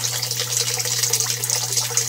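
Water from an aquaponics bell siphon running out of a PVC pipe elbow and splashing in a steady stream into the fish tank below. The siphon is just starting to drain the gravel grow bed, its flow still building up before it fully kicks in.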